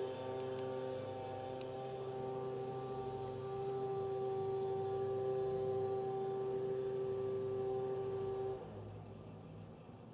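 Hedge trimmer running with a steady, unchanging pitched hum, cutting off abruptly near the end.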